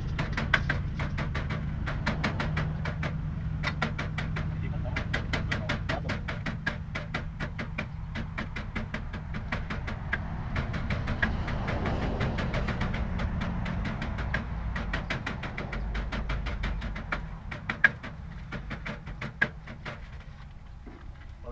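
Metal spatula scraping and clacking against a wok in quick, repeated strokes as food is stir-fried, easing off near the end, over a low steady hum.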